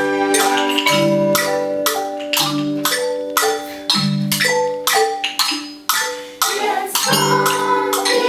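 Several wooden-bar xylophones struck with mallets, playing a tune of quick notes in a steady rhythm over recurring deeper bass notes. The playing thins briefly about six seconds in, then resumes.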